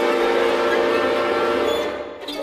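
Chamber orchestra holding a loud, sustained chord of many notes at once, which cuts off suddenly near the end.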